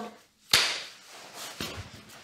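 Film clapperboard snapped shut once, about half a second in: a single sharp clap that fades over about half a second. It marks the start of a take so that picture and sound can be synced.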